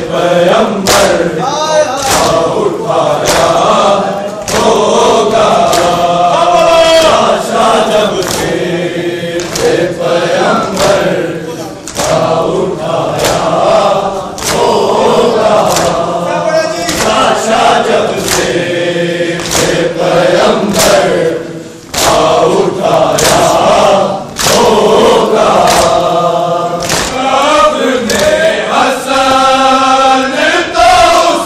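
A large crowd of men chanting a Shia mourning lament (noha) in unison, with loud rhythmic chest-beating slaps (matam) keeping a steady beat of a little over one a second. The chant dips briefly twice, between lines.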